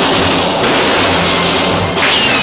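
Film soundtrack: orchestral score over a loud, steady hiss and crackle of electrical sparking from a live high-voltage cable as a man is electrocuted.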